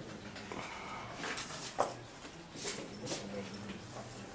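Lecture-hall room noise: a few short squeaks and knocks, the sharpest about two seconds in, over a low steady hum.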